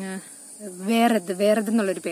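A woman talking, over a steady high-pitched chirring of insects that runs unbroken beneath her voice.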